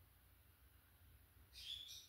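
Near silence: room tone, with one faint, brief high-pitched sound near the end.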